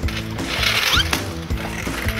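A homemade two-wheeled cigarette-butt pickup device with a metal frame, pushed along asphalt. Its wheels and pickup mechanism rattle with irregular clicks, over background music.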